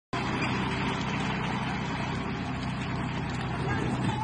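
Cotton picker's diesel engine running steadily while its basket is raised to dump.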